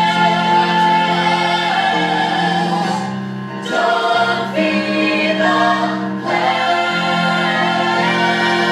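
Women singing together in harmony over a musical accompaniment, in a live stage-musical number. The loudness dips briefly about halfway through.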